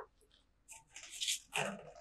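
Faint rustling and light handling noises of items being moved around inside an open box, in a few short patches from about a second in.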